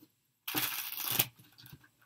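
A tarot deck being shuffled: a single quick papery flutter of cards lasting under a second.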